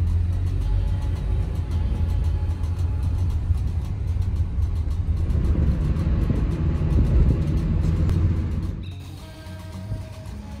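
Steady low rumble of a small taxi's engine and road noise heard from inside the car's cabin, with background music over it; about nine seconds in the rumble drops away to a much quieter scene.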